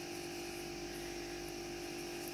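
Steady electrical hum with a faint hiss behind it: room tone, with no distinct event.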